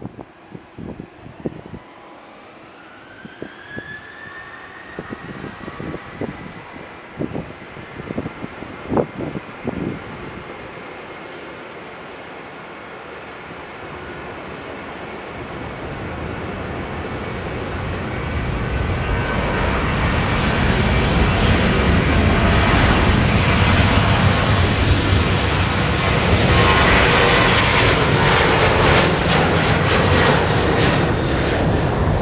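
Boeing 737-800's CFM56 turbofan engines spooling up for takeoff, with a rising whine a few seconds in. The engine noise then builds steadily as the jet accelerates down the runway and passes, and is loudest over the last ten seconds. Gusts of wind buffet the microphone during the first ten seconds.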